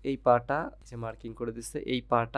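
A man speaking: narration over a screen recording, with no other sound.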